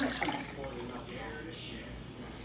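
Milk pouring in a stream from a plastic jug into a glass tumbler, splashing as the glass fills.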